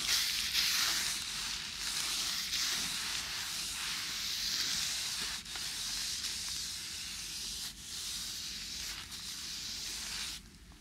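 Shower spraying water in a steady hiss, rinsing off leftover stickiness. It starts suddenly and dips briefly about three quarters of the way through.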